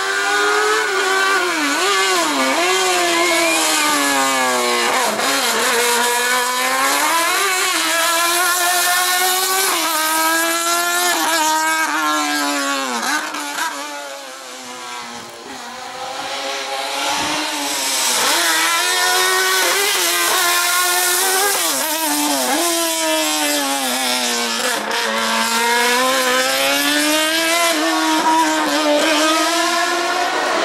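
Slalom race car's engine revving hard, its pitch climbing and dropping over and over as the car accelerates and brakes through cone chicanes. It fades in the middle of the clip, then comes back loud.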